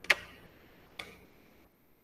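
Two sharp clicks about a second apart, the first the louder, each with a short ringing tail, over faint room tone.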